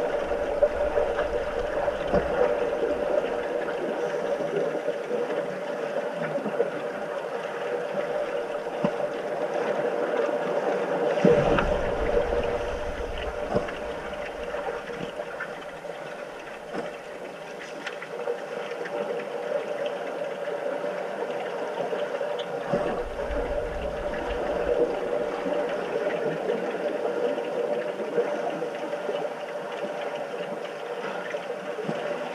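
Sound recorded underwater in a swimming pool: a steady mid-pitched hum under the bubbling and rushing water of finned swimmers and their exhaled air, with scattered light knocks. A low rumbling surge comes about 11 seconds in, the loudest moment, and another about 23 seconds in.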